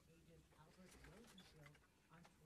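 Near silence with faint, indistinct voices talking in the background.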